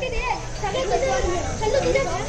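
A group of schoolchildren's voices together, overlapping and continuous with a wavering, sing-song rise and fall.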